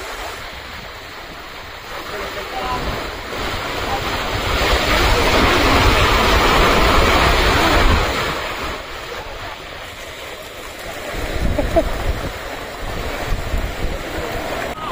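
Surf washing in and breaking on a beach, with wind buffeting the microphone. The wash swells loudest for several seconds in the middle, eases off, then builds again near the end.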